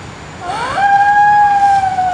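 A long, high howl that rises at its start and then holds on one steady pitch.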